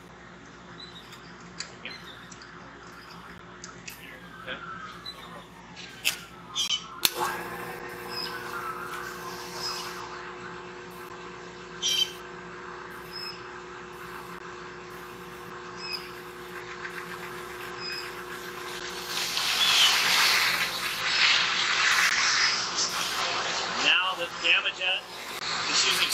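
A pressure-washing pump unit switches on with a knock about seven seconds in and runs with a steady hum. From about nineteen seconds in, a rotating tank-cleaning jet nozzle sprays inside a small clear acrylic tank with a loud, steady hiss.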